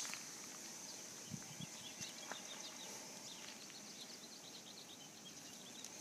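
Small birds chirping faintly: many short, high chirps repeating, with a few soft knocks in the first couple of seconds.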